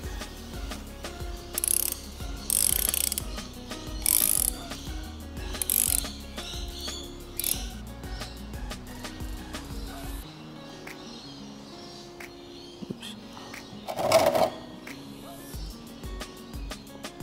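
Socket ratchet clicking in several short bursts while loosening a transmission drain plug, over steady background music. There is one louder burst of noise near the end.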